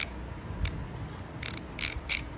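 Ratcheting multi-bit screwdriver clicking as its knurled direction-reversing collar is turned through its notches: a few sharp, separate metallic clicks.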